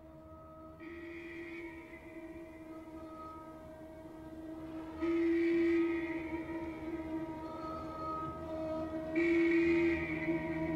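Long held horn-like chords from a TV drama's opening-credits soundtrack. Under a steady low tone, fuller, brighter chords swell in suddenly at about one, five and nine seconds in, each held for a second or so.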